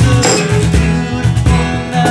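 Acoustic guitar strummed in chords over a steady cajon beat of low thumps and occasional sharp slaps.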